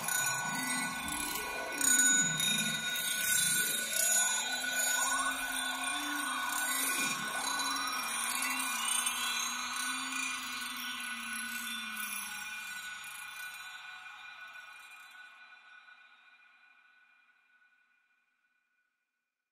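Closing bars of an ambient downtempo electronic track. Gliding synth tones sweep up and down over steady ringing tones, and everything fades out to silence by the end.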